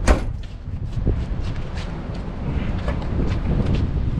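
RV exterior storage compartment door worked by its chrome paddle latch: one sharp clack right at the start, then lighter clicks and rattles as the door is swung open. A low wind rumble on the microphone runs underneath.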